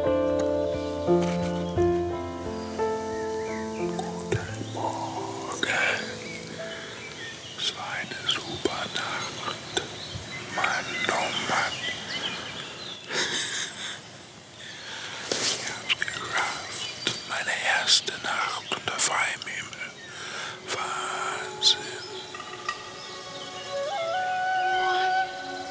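Soft piano music fades out over the first few seconds. It gives way to scattered short bird chirps among hushed, whispery rustling. A new tune comes in right at the end.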